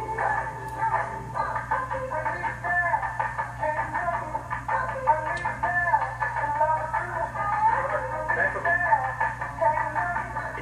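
Music with a singing voice heard through a video baby monitor's small speaker, thin and narrow-sounding, over a steady low electrical hum.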